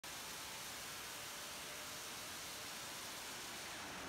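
Steady, even hiss at a low level, with no distinct strokes or rhythm.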